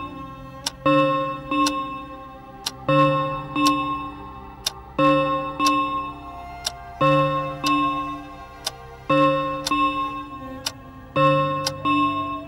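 Suspense background music: a low, pitched phrase that repeats about every two seconds, with a clock ticking about once a second.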